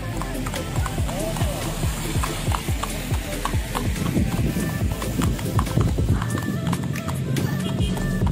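Hooves of a horse pulling a two-wheeled carriage clip-clopping along a wet asphalt road, mixed with music.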